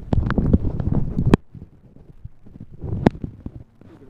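Rumbling and knocking on a handheld phone's microphone, loud for the first second and a half and then dropping away, with one sharp click about three seconds in.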